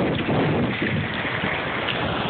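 Wind buffeting a phone's microphone in a steady rumble, over the wash of surf running across shallow water.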